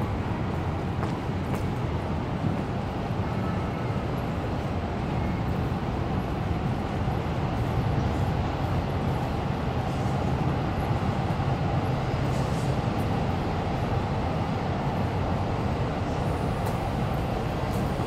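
Steady low rumble of city vehicles.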